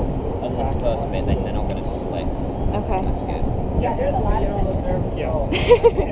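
Steady low rumble of wind on the camera microphone during a building rappel, with faint, indistinct voices from the people on the roof above; the voices rise briefly near the end.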